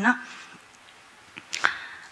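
A pause in a woman's talk over a hall microphone. A phrase ends just as it begins, followed by about a second of low room tone, then two short sharp sounds near the end before she speaks again.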